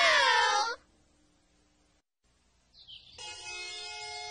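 A girl's long, wavering, high-pitched wail of crying that breaks off less than a second in. Near silence follows, then soft, sustained music chords come in about three seconds in.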